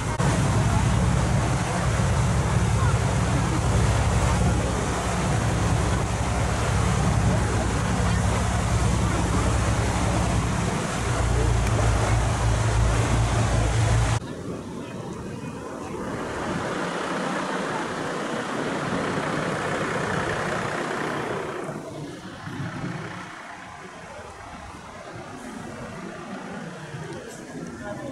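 A boat's engine running steadily under way, a deep low hum with wind and water rushing past. About halfway through it cuts off abruptly to a much quieter street ambience with passing traffic.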